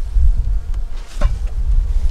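Wind rumbling on the microphone over honey bees buzzing around an opened hive, with one light click just over a second in.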